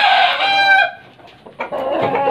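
A gamecock crowing: one long crow ends about a second in, and another begins near the end.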